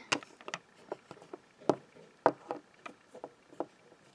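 Light, irregular clicks and taps of small plastic toy pieces being handled and set down on a desk.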